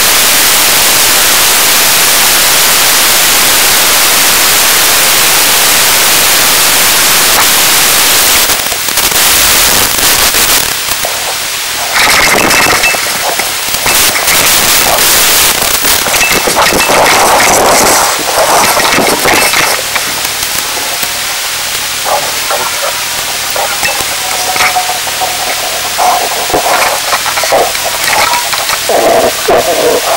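Loud, steady static hiss from a wireless collar camera's radio link for the first several seconds. Then the hiss gives way to irregular crackling and popping as the signal comes and goes while the camera is carried deeper into an earth burrow.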